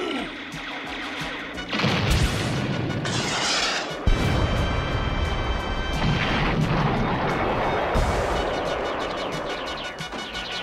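Cartoon energy-weapon fire and several heavy booming blasts, spaced about two seconds apart, over dramatic action music.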